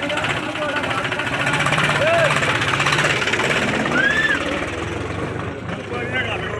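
Diesel tractor engine running with a rapid, loud knocking beat, with a crowd shouting over it; the engine sound eases near the end.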